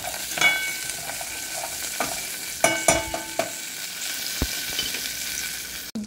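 Whole spices, cashews and raisins sizzling in hot oil in a rice cooker's metal inner pot, with a spatula stirring and scraping against the pot. A few sharper scrapes come about half a second in and around the middle.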